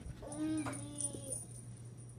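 A baby in a crib giving one soft, drawn-out whiny call lasting about a second, over a faint steady hum.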